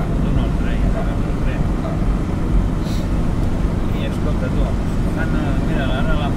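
Steady low rumble of engine and tyres on the road, heard from inside a moving car's cabin.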